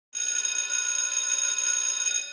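An electric bell ringing loudly and steadily, with a bright, high ring, starting abruptly at the cut to black.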